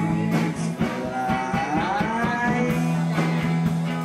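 Live rock band playing: hollow-body electric guitar and drums with cymbals over steady low bass notes. A sliding melody line bends up in pitch about a second in.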